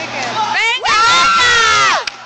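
A loud, high-pitched yell held for about a second, starting about halfway in and falling away at the end, over the chatter of a crowd.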